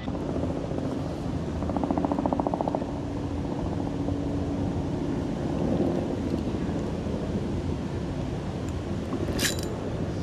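Steady low outdoor rumble, over which a spinning reel is handled and cranked to retrieve line. A short sharp click comes near the end.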